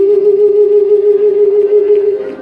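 A male singer on a microphone holds one long, high sustained note with a slight vibrato, having slid up into it just before.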